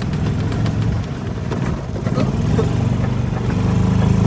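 Club Car gas golf cart's small engine running while the cart drives across rough grass, with the body rattling and clicking over the bumps.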